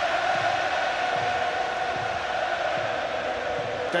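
Football stadium crowd from a television broadcast: a steady mass of voices with a held, sung tone running through it.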